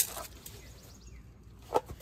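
A tape measure and marker being handled against the slide-out's metal trim: a sharp click at the start and a short knock near the end, with low outdoor background between them.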